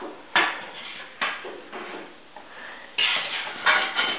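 Hard objects knocking and clattering as a stick is jabbed and shoved among clutter on a garage floor: two sharp knocks about a second apart, then a louder burst of clattering and rustling near the end.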